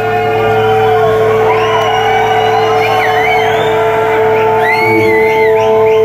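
Rock concert audience cheering, whooping and whistling in a large hall over one steady held note and a low hum from the stage amplification.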